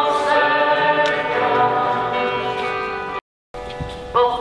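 A choir singing a slow religious hymn in long held notes. The sound cuts out abruptly for a moment near the end, then the singing returns.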